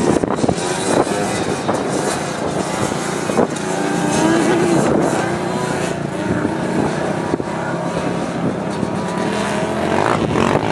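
Off-road desert race truck's engine working hard as the truck climbs a rocky dirt grade, the engine note rising and falling, with a clear rise in pitch about halfway through.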